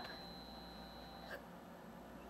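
Faint steady high-pitched whine from a Compaq Deskpro 286 computer running its power-on self-test. The whine stops with a soft click about a second and a half in, leaving only a low hum.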